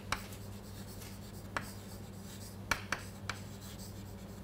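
Chalk writing on a chalkboard: sharp taps and short scrapes of the chalk as letters are written, about five in four seconds at an uneven pace, over a steady low hum.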